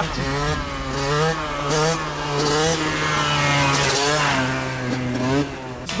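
Yamaha YZ125 two-stroke motocross bike revving hard and accelerating, its engine note rising in repeated sweeps as the rider tries to lift the front wheel. It eases off near the end.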